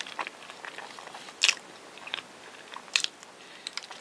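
Close-miked chewing of a soft, chewy rice-cake bread with cream filling, with sticky, wet mouth clicks. Two louder smacks come about a second and a half in and again near three seconds.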